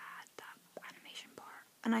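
Soft whispered speech with a few small mouth clicks; normal speech starts near the end.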